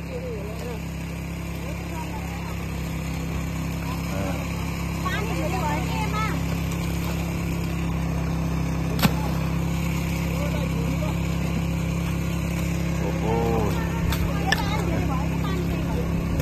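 Steady low drone of a small engine running, with faint voices and one sharp knock about halfway through.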